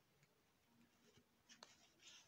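Near silence, with faint rustling and a couple of light ticks in the second half as hands work yarn through a crocheted piece while sewing it.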